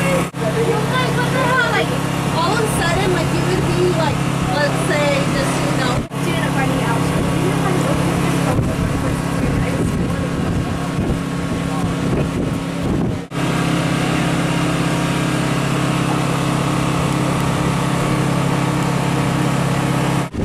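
A steady low engine-like hum with people's voices talking over it, the sound dropping out briefly three times.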